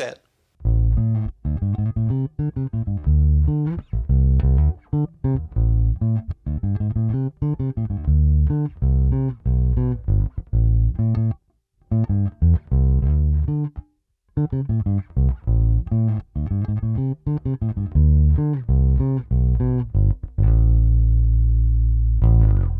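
Harley Benton MV-4MSB short-scale bass played with the fingers through its neck P-style pickup soloed, tone knob at 50%, recorded direct: a bassline of plucked notes with two short breaks, ending on one long held low note.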